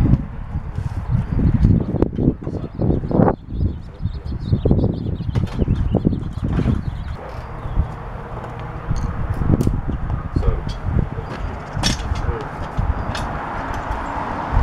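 Irregular thumps and knocks of spa-moving gear being handled: furniture dollies set under a hot tub and a wheeled spa slider rolled into place on concrete, with a few sharper clicks near the end.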